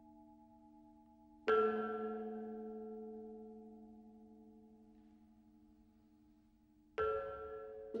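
Metal temple bowls struck about a second and a half in and again near the end, each stroke ringing on as a chord of several steady tones that slowly fades; the tail of an earlier stroke is still sounding faintly at the start.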